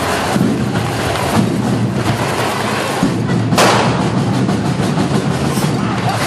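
Loud percussive music over the hissing and crackling of hand-held correfoc fireworks (carretilles) spraying sparks, with one sharp crack about three and a half seconds in.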